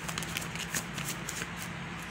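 Tarot deck being shuffled by hand: a quick run of light card flicks and clicks that stops shortly before the end.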